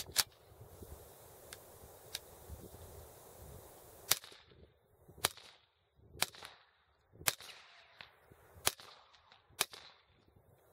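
HK USP Tactical 9mm pistol fired through an Ultima suppressor with 147-grain subsonic ammunition: six suppressed shots about a second apart, each a sharp report followed by a short echo. A few light clicks of the pistol being handled come in the first two seconds.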